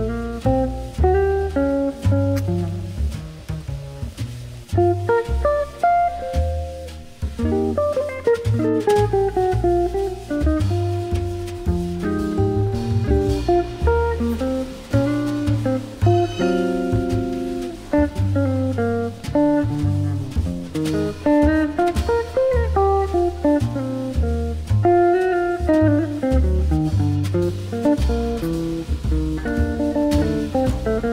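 Background music: a plucked guitar melody over a steady bass line, with a relaxed, jazzy feel.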